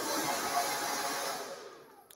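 Hand-held hair dryer blowing a steady rush of air through hair on a paddle brush during a smoothing blowout, fading out near the end as it is switched off.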